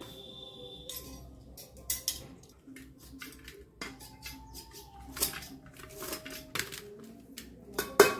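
Leafy greens being torn and cut by hand over an aluminium pot, with scattered light taps and clinks as pieces and the blade touch the metal pot.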